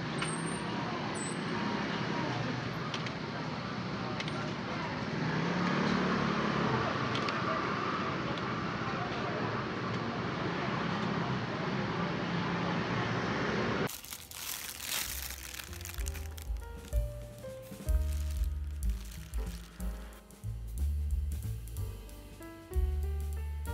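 Steady street-stall background noise, an even haze of traffic and distant voices with a few small clicks. About fourteen seconds in it cuts off suddenly and background music with bass notes and drums takes over.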